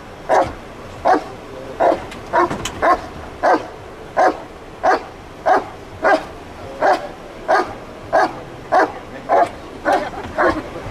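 A dog barking steadily and evenly, about three barks every two seconds.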